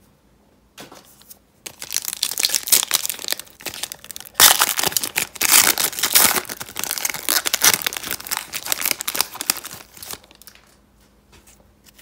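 Foil trading-card pack wrapper being torn open and crinkled by hand: a dense crackling that starts about a second in, is loudest in the middle and dies away about two seconds before the end.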